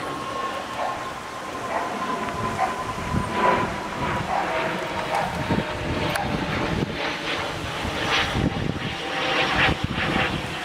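Outdoor rumble of wind on the microphone over a faint, steady distant engine drone that sags slightly in pitch.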